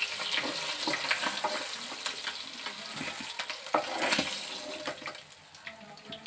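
Oil sizzling in a non-stick frying pan, with a metal spatula scraping and clicking against the pan as fried pieces are turned and lifted out. The sizzling grows quieter about five seconds in.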